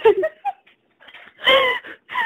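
People laughing: a short laugh trailing off the last words at the start, then a louder single laugh about one and a half seconds in.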